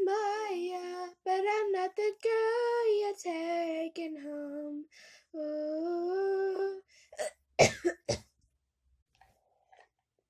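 Unaccompanied young voice singing long held notes with no clear words, breaking off about seven seconds in into a few sharp coughs.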